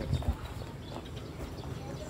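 Handling noise from a bag being pressed and adjusted right beside the microphone: two dull thumps just after the start, then faint rustling and small clicks.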